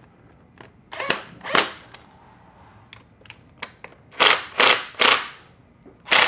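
Cordless electric screwdriver tightening stainless Phillips screws on a motorcycle fairing's speaker adapter, running in short bursts: two about a second in, then three quick ones near the end, with small clicks between.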